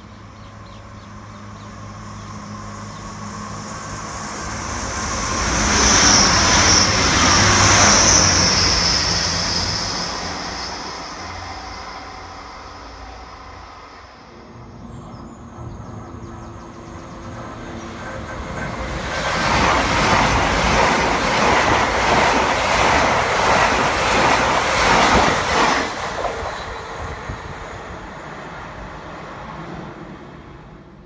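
Two trains passing at speed, one after the other. The first grows to its loudest about six to nine seconds in, with a high whine over the rumble. The second, an LNER Azuma, goes by from about nineteen to twenty-six seconds in, with a fast rattle of wheels over the rails.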